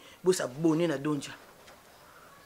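A person's voice making a short, drawn-out vocal sound with a wavering pitch and no clear words, ending about a second and a half in. Faint room tone follows.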